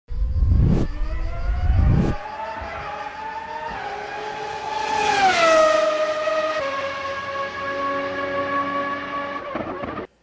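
Race-car sound effect for an animated logo: a low rumble with two sharp knocks in the first two seconds, then a long pitched tone like an engine or tyre squeal that rises slightly, drops in pitch about five seconds in, and holds steady until it stops just before the end.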